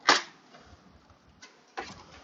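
Plastic side cover of a Kawasaki Z300 pulled free of its push-in clips: one sharp snap right at the start, then two fainter clicks later.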